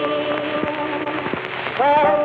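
Instrumental passage from a late-1920s blues-and-jazz vocal duet record: held notes with no singing, over the steady crackle and hiss of an old 78 rpm disc transfer.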